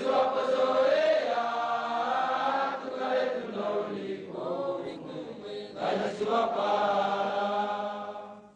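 A group of voices chanting in unison in long, drawn-out phrases, breaking briefly a little past halfway and again near six seconds.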